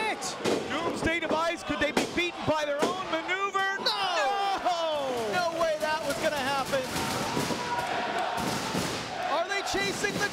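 Live pro wrestling match audio: loud shouting voices, with several sharp thuds of wrestlers' bodies hitting the ring canvas in the first few seconds.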